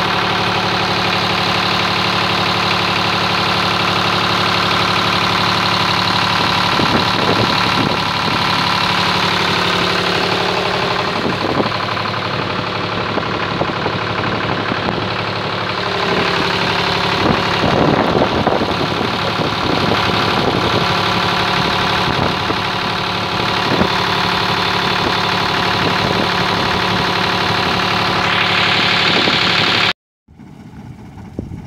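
Engine of a Farsund sloop running steadily under way, on a test run after thirty years laid up ashore, with water splashing along the hull at times.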